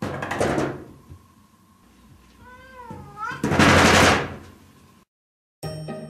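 A cat paws at a wooden-framed frosted-glass sliding door, rattling it in its frame, twice, the second time louder. Between the two rattles the cat gives one meow that dips and then rises in pitch. Music starts shortly before the end.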